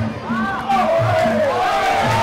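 Traditional Muay Thai fight music (Sarama): a reedy wind melody that slides and wavers up and down over a steady repeating drum pattern, with crowd noise underneath.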